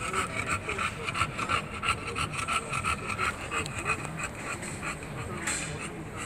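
English bulldog panting rapidly and steadily, a fast even rhythm of short rasping breaths.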